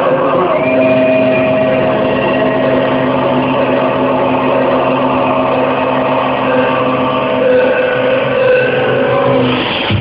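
Loud electronic dance music in a breakdown: held synth tones layered as a steady drone with no clear beat, swelling slightly near the end before percussion comes in.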